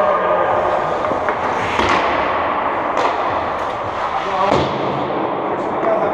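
Ice rink ambience: indistinct voices of hockey players with a few sharp knocks, one about halfway through and a small cluster near the end.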